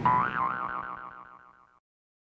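A cartoon 'boing' sound effect: a springy tone that wobbles rapidly up and down in pitch and fades out over about a second and a half.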